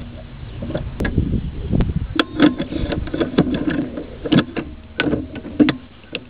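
Hand-tool work in an engine bay: scattered sharp metal clicks and knocks as a deep socket is fitted over a newly installed PCV valve, with handling rumble about a second in.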